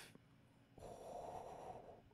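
A man's long breathy exhale with a soft 'oh', starting a little under a second in and lasting about a second, close to the microphone.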